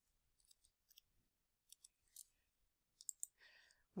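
Near silence broken by several faint, irregularly spaced clicks from a computer mouse and keyboard as a time is typed in and selected. A faint breath comes just before the end.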